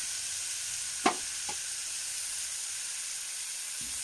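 Chopped vegetable pieces and green chillies sizzling steadily in hot oil in an aluminium pressure cooker, with one sharp clink about a second in.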